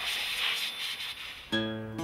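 A steady hiss from a multi-function vacuum cleaner spraying water into a car's engine bay, fading away. About one and a half seconds in, acoustic guitar music starts with plucked chords.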